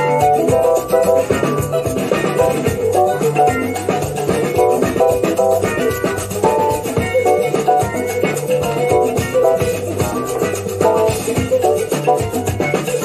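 1970s Spanish progressive rock playing from a record: electric guitars over bass guitar and drums, with shaker percussion keeping a steady rhythm.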